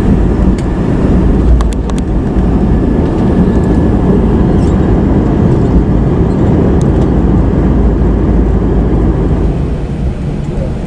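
Cabin noise of a jet airliner rolling fast along the runway: a loud, steady rumble of engines and wheels, heard through the fuselage, with a few faint clicks about two seconds in.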